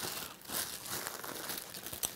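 Thin plastic bread bag crinkling irregularly as halved bagels are pushed into it and the bag is handled.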